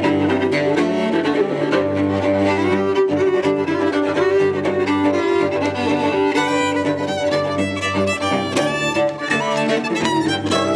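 Fiddle and cello playing a tune together live, with long held low notes under the fiddle's melody.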